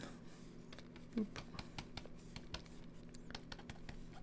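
Faint, irregular light taps and scratches of a pen stylus on a graphics tablet as short strokes are drawn. A brief murmur of a voice comes about a second in.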